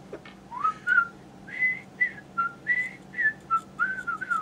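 A person whistling a short tune: about ten quick single notes, several sliding up or down in pitch.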